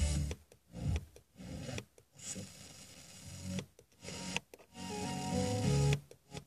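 Car FM radio being tuned up the band around 102.4 to 102.7 MHz: short fragments of music and hiss, each cut off by a brief silent gap as the radio mutes between frequencies.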